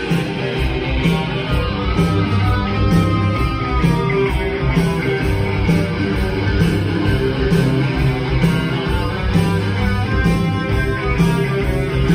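Live rock band playing an instrumental passage: electric guitars, bass guitar and drums with a steady beat, and a held guitar line a few seconds in.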